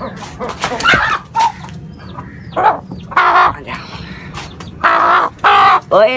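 A hen squawking loudly while being chased and caught, harsh calls about two and a half seconds in and again near the end, with short sharp scuffling noises between them.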